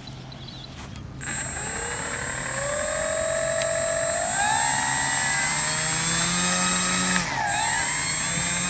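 Electric brushless motor and propeller of a Durafly Spitfire foam RC model, on its stock power system, spooling up about a second in: a high steady whine with a propeller tone that climbs in steps as the throttle is opened. The pitch dips briefly near the end and picks straight back up.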